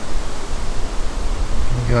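Wind on the microphone: a loud, even rushing noise with a low rumble beneath it, swelling and easing slightly.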